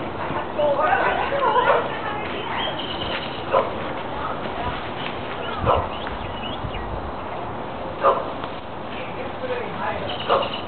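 Children and adults talking and calling out in a backyard, then a few short, sharp cries spaced about two seconds apart.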